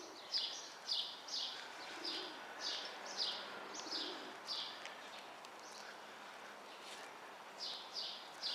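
A small songbird calling over and over: a short high chirp repeated a little over twice a second, breaking off about halfway through and starting again near the end.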